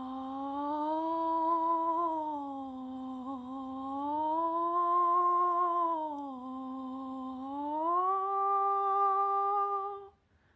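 A woman humming one unbroken line that slides smoothly from pitch to pitch: low, up, a little higher, back down low, then up to the highest note, which she holds to the end. It demonstrates singing between notes with a glissando and resistance, as a pianist's internal singing.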